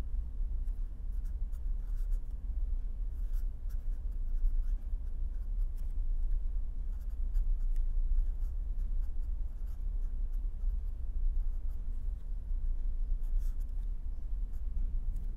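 Felt-tip pen writing on paper: faint, irregular short scratching strokes over a steady low hum.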